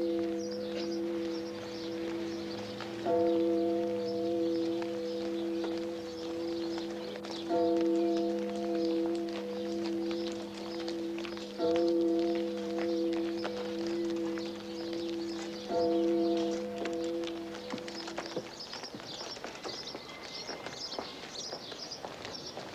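A large church bell tolling slowly, one strike about every four seconds, each ringing on in a deep hum until the next. The tolling stops with the last strike, after about sixteen seconds, and it fades out a couple of seconds later.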